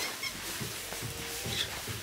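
Soft footsteps climbing a staircase, about four steps, with a faint thin whine in the background.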